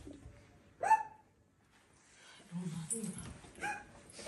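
A woman crying: one short, high sob that falls in pitch about a second in, then lower sobbing whimpers in the second half.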